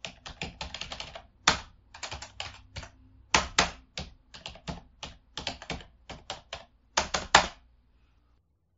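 A quick, irregular run of sharp clicks and taps, some bunched in rapid clusters, over a faint low hum; the clicks stop shortly before the end.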